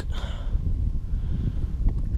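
Wind buffeting the microphone, a steady low rumble with no other clear sound.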